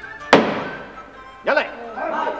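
One sharp slam of a wooden gavel block struck on a magistrate's desk, with a fading ring, over background music.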